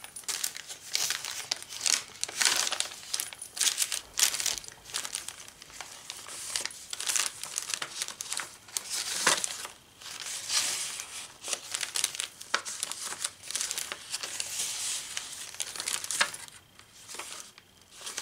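Paper rustling and crinkling as handmade journal pages, paper tags and ephemera are handled and turned, in a string of irregular rustles.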